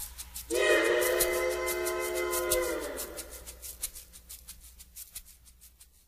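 A train-whistle sound is held for about two and a half seconds, sagging in pitch as it ends. Under it a fast, even shaker-like rhythm keeps going like a train's chugging and fades away as the song closes.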